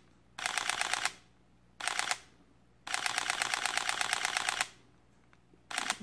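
Sony A7R III camera's shutter firing in high-speed continuous bursts of rapid clicks, about ten shots a second. There are three bursts, a short one, a shorter one and a longer one of nearly two seconds, and a fourth starts near the end.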